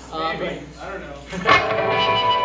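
A voice talking over the PA, then, about a second and a half in, an amplified electric guitar comes in suddenly with a held, ringing note that carries on.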